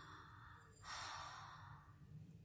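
A soft breath by the reader, a faint hiss of air lasting about a second and starting about a second in.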